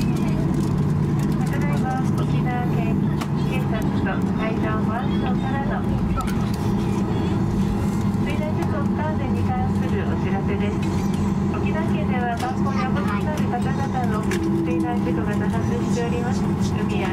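Cabin crew announcement over a Boeing 737-800's public-address system, heard inside the cabin over the steady drone of its CFM56 jet engines as the aircraft taxis after landing.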